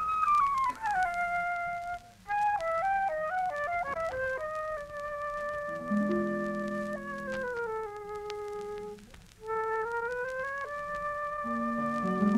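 A radio studio orchestra plays the instrumental introduction to a vocal ballad. A flute-like melody has notes that slide slowly down in pitch over held low chords, on an old broadcast recording.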